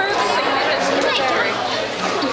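Many voices talking and calling out at once: crowd chatter from an audience packed close around the microphone.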